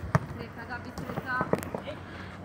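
A futsal ball kicked on the court: two sharp thuds about a second and a half apart, the first the louder, with players' voices calling out faintly in between.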